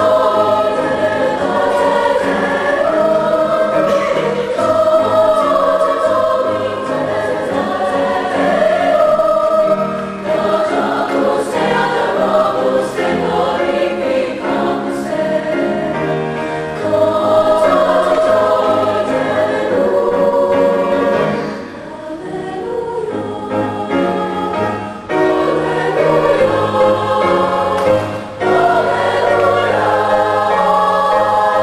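Large women's choir singing in several parts at once, phrase after phrase, with brief breaths between phrases past the middle.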